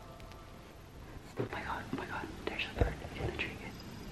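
A woman whispering softly in short broken phrases, with one short thump a little before three seconds in.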